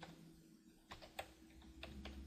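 Faint computer-keyboard keystrokes: a handful of irregular, separate key clicks as a phone number is typed.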